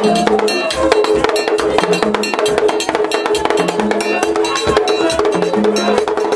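Haitian Vodou ceremonial music: a fast, dense drum and percussion pattern with bright bell-like strokes over held notes.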